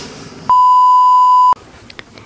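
A single steady, high-pitched electronic beep, a censor-style bleep tone about one second long, which starts and stops abruptly. It is a tone added in editing over a jump cut.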